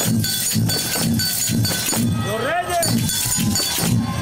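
A street band of hand percussion, tambourines jingling and a low beat about three times a second, playing a steady marching rhythm. Once in the middle a voice calls out over it with a rising and falling cry.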